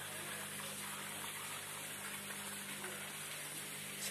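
Steady, fairly quiet hiss of running or splashing water with a low, even electric hum underneath, of the kind made by a running pump or aerator.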